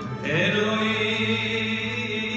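Live Andalusian nuba music: a male singer holding long chanted notes over an orchestra of ouds, violins and cello. A rising slide enters about a quarter second in.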